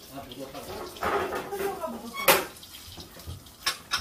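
Washing up by hand at a kitchen sink: tap water running, with dishes clinking and knocking. The sharpest clink comes a little over two seconds in, and a lighter one near the end.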